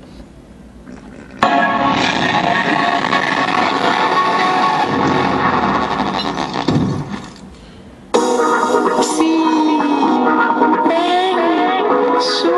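Music played from a phone through a small homemade battery-powered portable speaker built from an oil can. It starts suddenly about a second and a half in, dies away around seven seconds, and a different song with a sung melody starts abruptly about eight seconds in.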